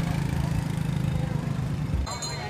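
Small motorbike engine running, a loud, steady low drone, amid street traffic noise.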